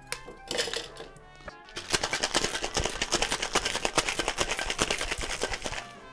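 Ice rattling inside a stainless steel tin-on-tin cocktail shaker, shaken hard: a few clinks early, then from about two seconds in a rapid, steady rattle.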